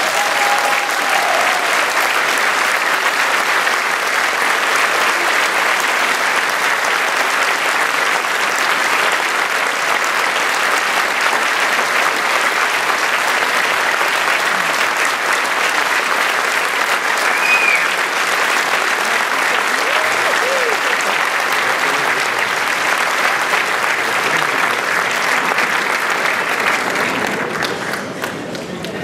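A large audience applauding steadily after a performance, with a few faint calls or whistles in the clapping, easing off slightly near the end.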